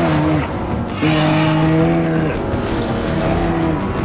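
Dinosaur documentary soundtrack: three long, low, horn-like tones, each held a second or so, as a sauropod rears against an attacking predator, over a rough rumbling bed.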